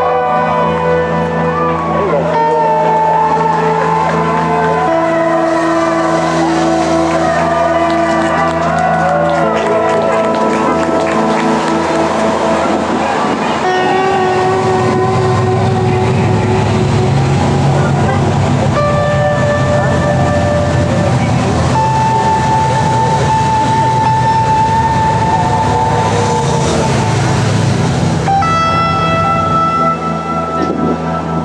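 Loud music with a singing voice, and from about halfway through the low rumble of cars and motorbikes in a publicity caravan passing along the road.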